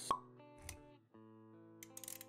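Intro music with held notes, a sharp pop sound effect just after the start and a softer low thump a little later. The music dips briefly about halfway through, then comes back.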